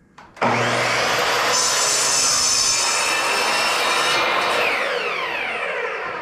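Sliding compound miter saw starting up with a rising whine about half a second in and cutting through plywood. The blade then winds down with a falling whine from about four seconds in.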